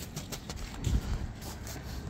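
Wind rumbling on the microphone outdoors, with faint scattered clicks and a dull low thump about a second in.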